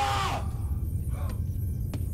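A man's short shout that falls in pitch right at the start, then a steady low rumble with faint scattered sounds.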